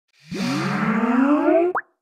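Skype logo sound effect: a chord of electronic tones slowly rising in pitch for about a second and a half, capped by a quick upward bloop just before it cuts off.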